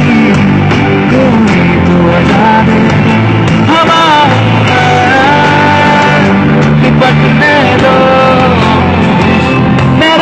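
Live band performance: a male singer singing a melody into a microphone over electric guitar and band accompaniment, loud and steady throughout.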